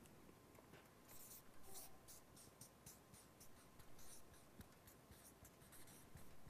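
Felt-tip marker writing on a paper flip chart: faint, short strokes with brief pauses between them as a word is written out.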